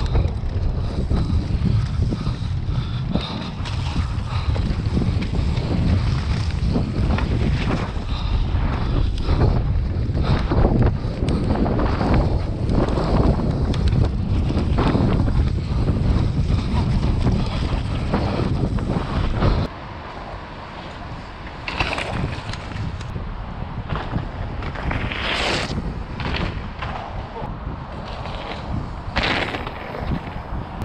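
Wind buffeting a camera microphone and tyres rumbling over a dirt trail as a downhill mountain bike rides fast through woodland, with frequent knocks and rattles from the bike. About two-thirds of the way in, the sound drops suddenly to a quieter wind hiss broken by a few short louder gusts or knocks.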